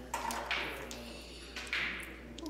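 Crokinole discs on a wooden board: a few sharp clicks as a flicked disc caroms off another disc toward the centre 20 hole, with the loudest clack near the end. It is a shot meant to redirect the shooter's own disc into the 20 hole.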